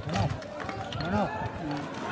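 People's voices calling out with rising and falling pitch, several overlapping near the middle, over steady background noise.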